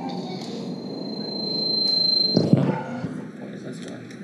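Several voices vocalizing together, with a thin, high, steady whistle-like tone that swells over about two seconds and breaks off, followed by a sharp thump at the loudest point.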